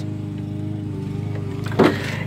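Steady low engine hum of an idling vehicle.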